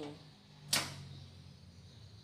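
A single sharp click about three-quarters of a second in, over a faint low steady hum.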